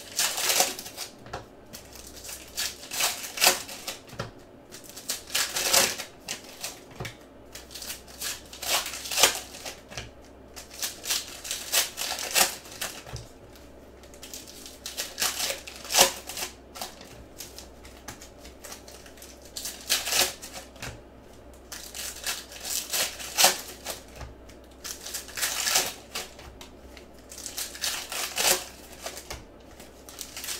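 Shiny foil trading-card pack wrappers crinkling and being torn open by hand, with cards handled and flicked through between, in irregular bursts of crackling.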